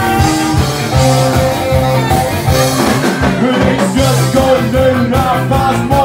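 A live band playing an upbeat song with a steady beat, with singing.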